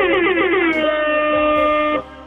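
A person's voice holding one long high note, wavering at first and then steady for about a second, cut off abruptly at the end.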